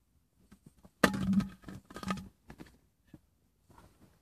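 Handling noise: a sudden burst of rustling and knocking about a second in, lasting about a second, followed by scattered light clicks.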